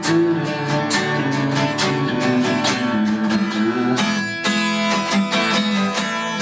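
Acoustic guitar strummed in a steady rhythm, with held melodic notes sounding over it.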